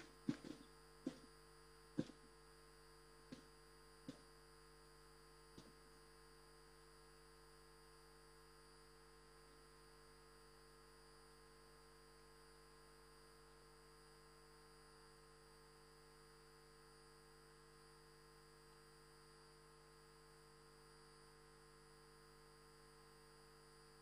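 Near silence: a faint steady electrical mains hum, with a few faint short clicks in the first six seconds.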